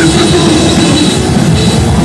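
Crust punk band playing live: distorted electric guitar, bass and drum kit, loud and unbroken.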